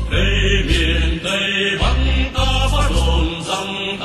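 Vietnamese revolutionary song playing: chant-like singing with gliding voice lines over a steady beat of strong bass notes.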